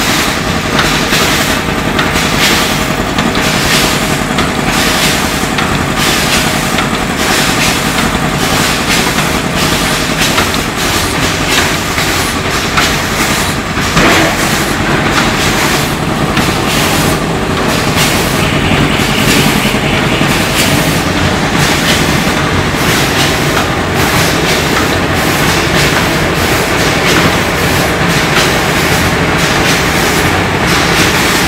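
Automatic pouch packing machine running: a steady mechanical clatter with a regular beat of strokes over a constant hum, with one sharper click about halfway through.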